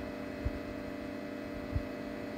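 Steady electrical hum holding a few fixed low tones, with two soft low thumps, one about half a second in and one near the end.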